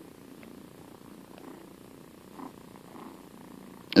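A house cat purring steadily close to the microphone.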